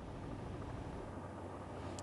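Faint, steady outdoor street background picked up by a field microphone: an even low rumble, with a low hum coming in about halfway through.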